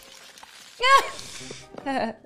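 Mostly speech: a man's loud shout of "Freeze!" a little under a second in, then laughter near the end, over faint background music.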